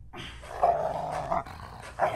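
Boston terrier growling while tugging at a plush toy: one long growl that swells louder twice.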